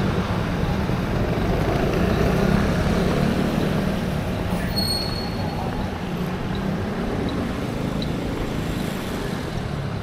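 Street traffic: scooter and car engines running steadily at an intersection, easing slightly over the stretch. About five seconds in, a brief high-pitched squeal cuts through.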